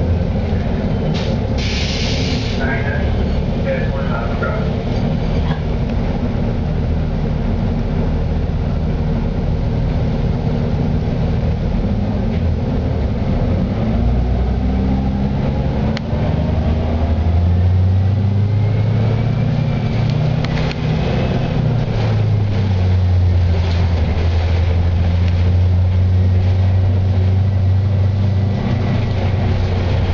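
Cabin sound of a 2007 Eldorado National EZ Rider II transit bus with a Cummins B Gas Plus natural-gas engine and Allison automatic transmission. The engine runs low at first, with a short hiss about two seconds in. From about halfway the bus pulls away: engine and drivetrain whine rise in pitch, dip once near a gear change, then hold steady.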